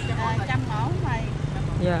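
Voices talking over a steady low rumble of street traffic.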